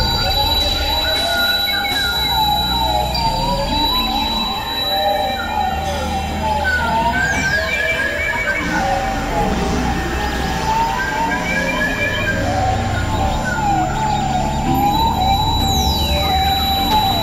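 Dense experimental electronic music collage of several tracks playing over each other: wavering, siren-like pitched lines over low drones and a steady high tone. Two long falling sweeps run through it, one about halfway through and one at the very end.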